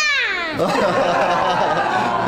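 A toddler's high-pitched excited squeal that slides down in pitch, then draws out into a held, wavering cry for over a second.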